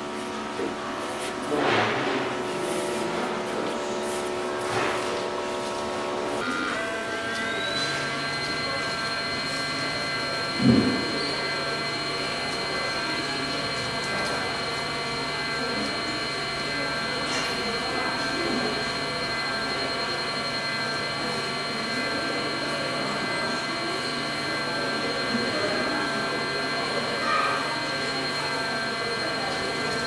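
HumminGuru ultrasonic vinyl record cleaner running with a steady whine made of several tones. About six seconds in, the whine rises to a higher, brighter pitch as another motor or fan spins up, and a low hum joins it. There is a single short knock about eleven seconds in.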